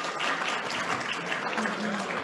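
Audience applauding, with voices over the clapping.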